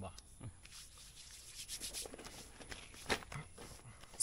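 Palms rubbing white face powder onto skin: quiet, uneven skin-on-skin brushing, with a short click about three seconds in.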